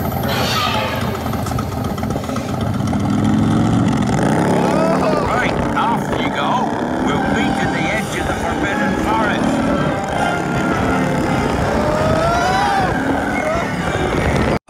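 Onboard audio of a themed motorbike roller coaster train: the train's speakers play a steady motorbike engine sound effect as it rolls out of the station and along the track. People's voices cut in over it now and then.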